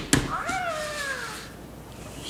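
Hatchimal toy inside its plastic egg: a couple of quick taps on the shell, then the toy's electronic creature cry, one call that rises and then falls in pitch over about a second.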